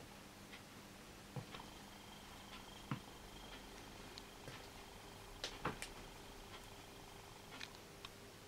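Quiet room tone with a faint steady hum and a thin high whine, broken by a few small sharp clicks, two of them close together a little past halfway.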